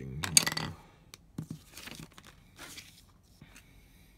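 A sheet of paper rustling as it is slid across and laid flat on a desk: one loud crisp rustle in the first second, then a click and a few softer rustles as it is settled.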